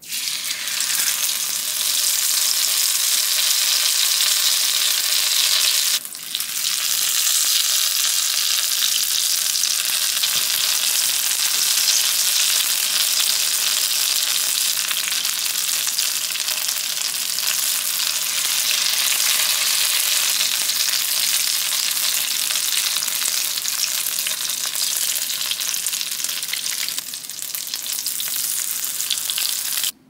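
Hot oil sizzling steadily in a skillet as folded bean-and-cheese tortillas shallow-fry. The sizzle starts abruptly as the first tortilla goes into the oil and drops out briefly about six seconds in.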